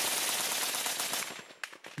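Rapid automatic gunfire in a dense, continuous stream that fades out about a second and a half in, followed by a few scattered single shots.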